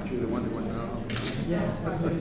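Indistinct voices exchanging greetings, with a still camera's shutter clicking in a quick burst a little after a second in.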